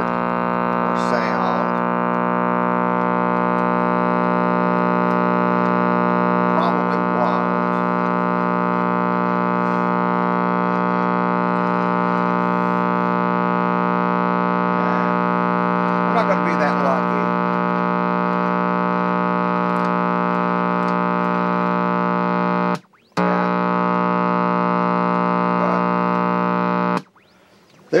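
A 1948 Motorola seven-inch portable television giving a loud, steady hum through its speaker, the sign of a bad capacitor. The hum breaks off for a moment about 23 seconds in and stops shortly before the end.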